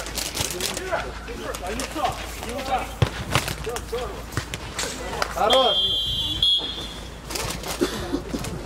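Players' voices shouting across an outdoor football pitch, with a sharp thump about three seconds in. A referee's whistle blows a steady shrill note for about a second and a half, beginning about five and a half seconds in.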